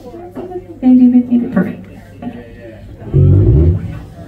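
A few words or sung syllables into the PA microphone, then about three seconds in a short, loud run of low electric bass guitar notes through the PA during a soundcheck.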